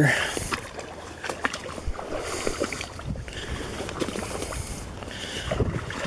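Small boat hull among marsh reeds: water lapping and small knocks and rustles against the hull, scattered and irregular, with a soft rush of wind or stems brushing about two to three seconds in.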